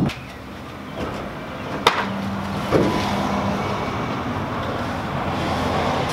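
A car driving past on the street, its road noise building over the last few seconds. Before it there are two sharp knocks, about a second apart, from an aluminium canoe being tipped and handled.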